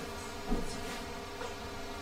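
Steady electrical buzz with many even overtones, with a brief soft sound about half a second in.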